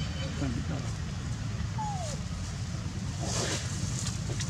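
A steady low rumble, with one short falling whistle-like call about halfway through. Near the end comes a brief scrape of dry leaf litter and dirt as a young monkey scuffs the ground.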